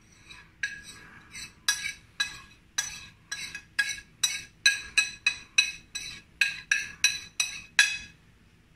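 Metal spoon tapping and scraping against a ceramic plate to knock spices off it: a run of sharp ringing clinks, about two a second.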